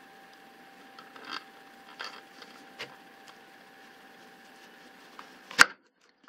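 Pampered Chef Veggie Wedger with stainless steel blades being handled over a lemon: a few light clicks, then one sharp click near the end as the bladed top is pushed down through the lemon.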